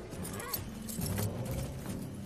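Horses standing and shifting about, with scattered hoof steps and tack noises, over low held notes of a music score.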